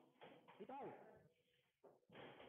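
Faint, indistinct voices.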